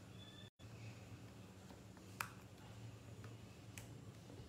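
Near silence: a low steady room hum, cut out completely for a moment about half a second in, with one sharp click a couple of seconds in and a fainter click near the end.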